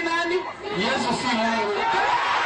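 Speech: a man's voice calling out to an audience, with crowd chatter behind it.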